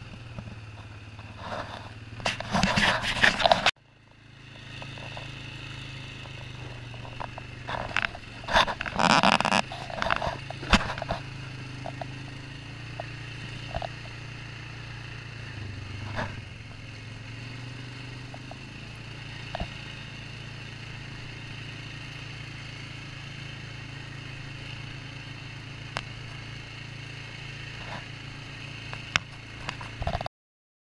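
ATV engine running steadily at low trail speed, with two bouts of loud clattering and scraping, about two seconds in and again around eight to eleven seconds, and scattered single knocks as it rides over rough ground. The sound cuts out briefly near four seconds, then builds back.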